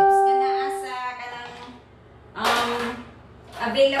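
A single pitched musical note rings out and fades away over about a second and a half, followed by a short spoken sound.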